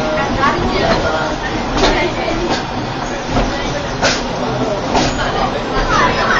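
Capri funicular car running along its rail track: a steady rumble with a few sharp clicks, under indistinct chatter from passengers.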